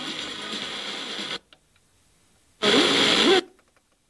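FM tuner receiving a weak, distant station through heavy hiss. The audio cuts out abruptly to near silence as the tuner's muting engages, comes back for under a second as a loud burst of station audio with a voice in it, then cuts out again: the muting of a tuner being stepped across the band, catching a fading sporadic-E signal.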